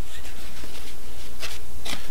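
Paper rustling and crinkling as a letter is handled and refolded, with two sharper crinkles near the end, over a steady low hum.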